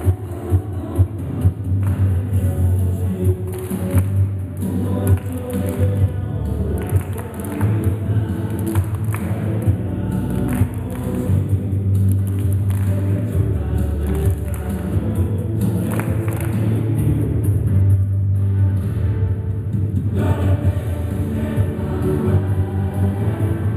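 An upbeat song with singing over a steady bass beat, played for children to dance to.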